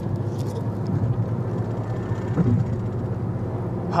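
Steady low hum of a car driving, heard from inside the cabin.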